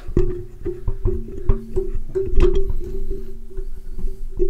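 Microphone being lowered on its stand, heard directly through the mic itself: irregular handling knocks and rattles over a steady low ringing tone.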